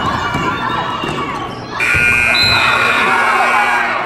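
Spectators and players shouting in a gymnasium, then about two seconds in a basketball scoreboard buzzer sounds, one steady horn tone held for about two seconds.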